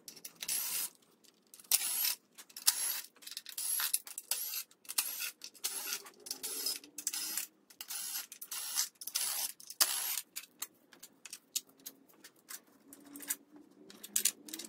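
Power ratchet running in a rapid series of short bursts, each a brief rising whir, as it backs out the 10 mm bolts holding an LS engine's oil pan.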